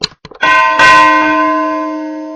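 Subscribe-button sound effect: a few quick mouse clicks, then a bell rung twice in quick succession as the notification bell is clicked. The ring holds a chord of steady overtones and slowly fades.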